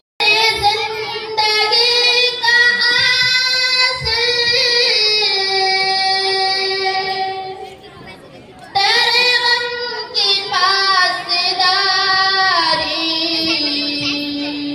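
A girl singing a ghazal unaccompanied, in two long phrases of held, wavering notes with a short breath pause about eight seconds in.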